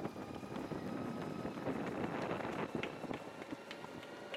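Rushing road and air noise from a camera vehicle moving alongside a runner, swelling to its loudest about two seconds in and then easing off.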